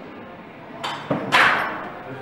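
Loaded barbell clanking into the steel hooks of a squat rack as it is racked: a few sharp metallic clanks with a ringing tail, about a second in.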